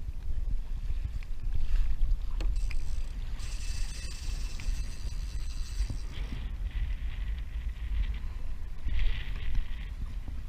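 Water washing along a kayak's hull with wind buffeting the microphone, a steady low rumble. A higher hiss joins for about three seconds in the middle, and there is a short brighter burst near the end.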